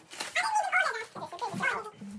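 A young girl's high-pitched voice whining and vocalising without clear words.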